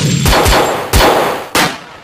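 Gunfire sound effects: a few sharp shots with a metallic ringing after each, the last about one and a half seconds in, then fading away near the end.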